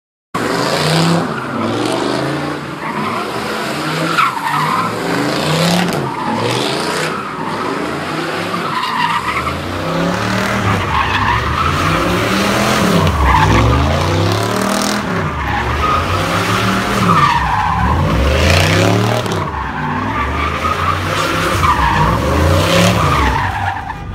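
Car doing a burnout, its tires squealing continuously while the engine revs rise and fall in repeated waves. The engine gets heavier from about nine seconds in.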